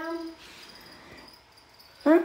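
A faint, high-pitched insect trill, cricket-like, lasting about a second, in an otherwise quiet room.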